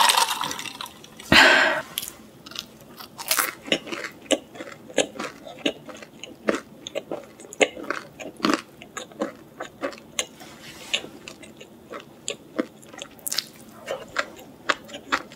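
Close-miked chewing of a mouthful of pizza: many short, irregular wet and crunchy mouth clicks. A drink of cola and a louder breathy burst come in the first two seconds.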